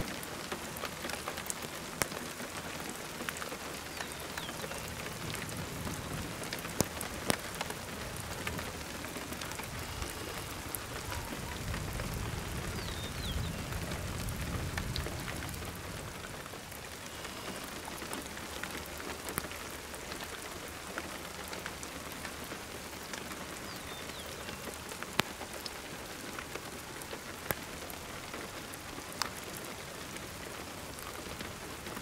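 Steady rain falling, with scattered sharp drops ticking close to the microphone. A low rumble swells briefly about halfway through.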